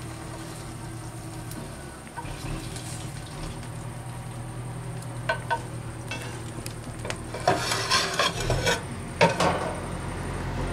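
A frying pan sizzling faintly over a steady low hum. Near the end comes a run of sharp clicks and knocks, which are the loudest sounds here.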